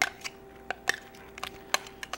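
A utensil scraping and knocking whipped topping out of a measuring cup into a glass mixing bowl, giving a few light clicks spread across the moment.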